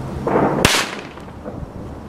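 A Salon Roger Water Cracker firecracker going off with a single sharp bang about two-thirds of a second in, just after a short rush of noise, with wind on the microphone.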